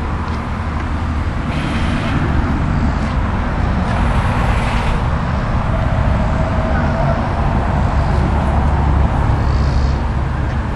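Steady low rumble of running engines, growing a little louder after the first couple of seconds.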